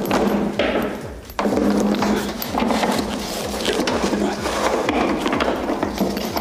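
Continuous rustling and scraping of cardboard and packaging as parts are pulled out of a tightly packed box, with a short pause about a second and a half in.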